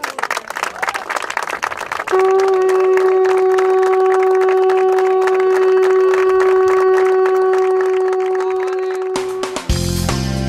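Crowd applauding, joined about two seconds in by one long, steady horn note held for about seven seconds over the clapping. Just before the end, music with a guitar cuts in.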